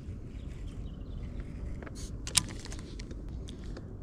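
Small scattered clicks and taps of fishing tackle being handled aboard a kayak, over a steady low rumble, with one sharper click about halfway through.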